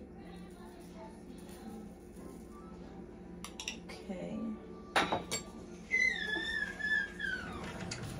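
Small glass spice jars clinking and their shaker lids clicking while meat is seasoned, with a few sharp knocks midway. Near the end a high, wavering whistle-like tone lasts about a second and a half and drops away.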